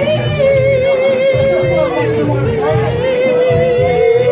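A man singing one long wavering held note into a handheld microphone, with background music keeping a steady beat underneath.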